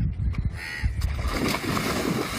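A man plunging into deep muddy water: a short harsh call about half a second in, then a noisy splash and churning water from about a second in.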